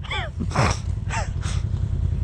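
Side-by-side UTV engine idling low and steady, with two short falling vocal sounds from a person and a breathy hiss about half a second in.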